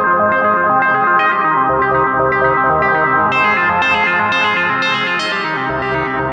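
Studio Electronics Boomstar 4075 analog synthesizer playing a quick repeating sequence of notes through a Nux Atlantic delay and reverb pedal, each note trailing echoes into the next. The tone grows brighter about halfway through.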